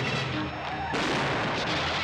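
Gunfire, a dense run of echoing shots that dips briefly about half a second in and picks up again sharply near the one-second mark.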